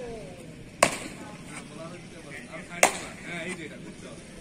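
Cricket bat striking a ball twice, two sharp cracks about two seconds apart, as the batsman plays deliveries in the nets.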